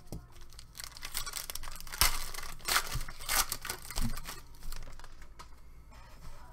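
A foil trading-card pack wrapper being torn open and crinkled: a run of rustles and rips, loudest from about two to three and a half seconds in, with a few soft knocks of handling.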